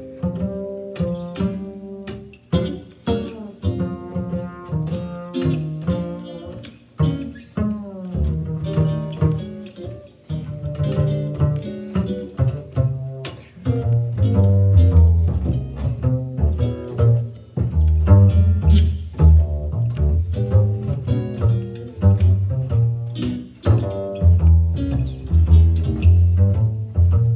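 Guitar and plucked upright double bass play an instrumental jazz passage with no singing. After the first several seconds the pizzicato bass comes to the fore, its low notes growing louder about halfway through, with the guitar continuing underneath.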